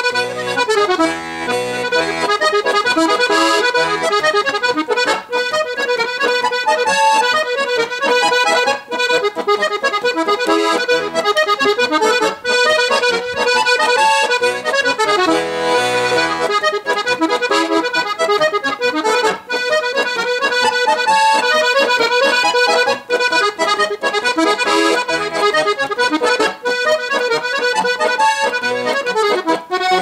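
Piano accordion playing a lively Slovenian Oberkrainer-style polka, a quick melody on the treble keys over bass and chord accompaniment from the left-hand buttons.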